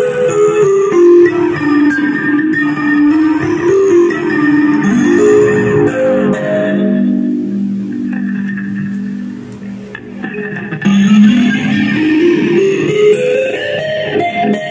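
Harplimba, an electric kalimba with a pickup, played through a preamp and amplifier with effects: harmonic minor scale notes step down and ring into each other in long sustained chords. The sound fades about ten seconds in, then comes back louder with notes climbing up the scale.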